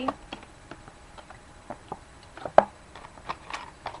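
Small clicks and taps from handling a nearly empty plastic bottle of water, its cap being worked by hand, with one sharper click about two and a half seconds in.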